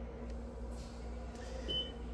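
A short, high electronic beep near the end, one of a beep that repeats about every two seconds, over a steady low electrical hum. A soft rustle of handling comes in the middle.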